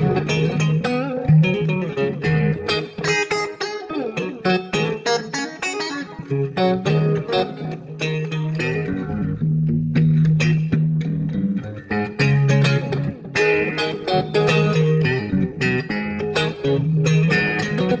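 Instrumental electric blues: an electric guitar plays a lead of many quick picked notes over a bass line of long held low notes.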